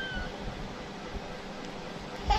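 The tail of a young child's high-pitched, meow-like whining cry, ending a moment in, followed by low room noise.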